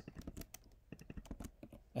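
Typing on a computer keyboard: a quick, faint run of keystrokes as a word of code is entered.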